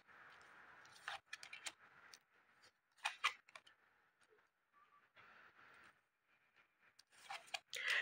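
Gypsy fortune-telling cards being dealt onto a woven placemat: a few soft clicks of cards landing, about a second in and again about three seconds in, with faint sliding and rustling between.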